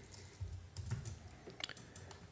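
Computer keyboard typing: a handful of light, separate keystrokes as a single word is typed.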